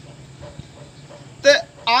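A man singing Punjabi verse unaccompanied, with wavering held notes. He pauses between phrases with only a faint low hum behind. A short sung note comes about one and a half seconds in, and the next phrase begins just before the end.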